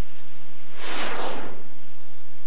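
A brief, soft rush of noise about a second in, over a faint steady hum.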